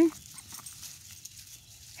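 Faint, scattered rustling and crunching of feet on dry fallen leaves as a dog and a group of ducks move across the ground.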